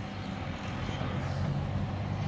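Low, steady drone of a distant engine, growing a little louder about a second in.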